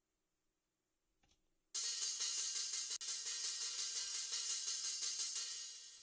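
Soloed hi-hat track from a metal mix playing back through a channel strip and the Soothe 2 resonance suppressor on a harsh hi-hat preset, which pulls out its harsh frequencies. It is a fast, even pattern of hits that comes in about two seconds in after silence and tapers off near the end.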